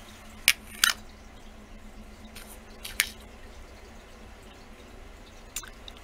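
Light clicks and taps of hand work at a craft table: two close together about half a second in, one about three seconds in and a faint one near the end, over a low steady hum.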